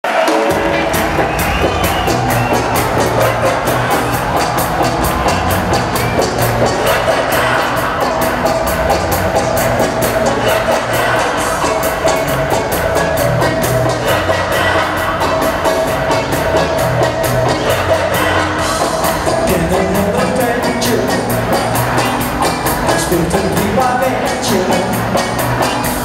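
A live pop-rock band playing through an arena PA: drum kit, bass, electric guitars and keyboards with a steady beat.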